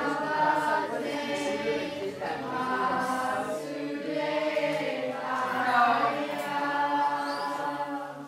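A group of voices singing a chant together in unison, in long held phrases with short breaks between them.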